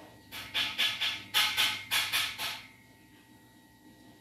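Close handling noise: about nine quick scratchy rubbing strokes in two runs, about four a second, stopping a little before three seconds in.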